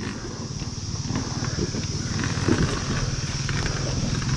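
Dirt bike engine running steadily at low revs on a rocky downhill trail, with a few brief knocks from the bike over the rocks.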